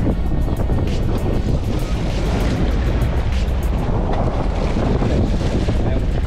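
Wind buffeting the microphone over the steady low drone of a sport-fishing boat's engine and the wash of the sea against the hull.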